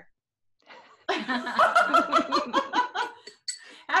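A woman laughing: a loud run of quick, pulsed laughs starting about a second in and lasting about two seconds.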